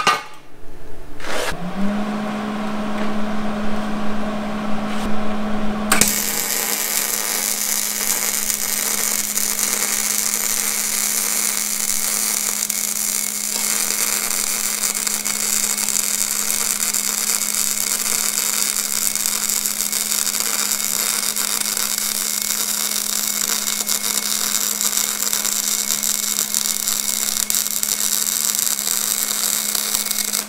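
Hobart gas-shielded MIG welder running a bead with .035 wire and 75/25 argon-CO2 on 1/8 in bar stock. A steady hum and a few short spurts come first. Then, about six seconds in, the arc settles into a continuous, even crackling sizzle that runs for over twenty seconds and lays what comes out as a decent, well-penetrated weld.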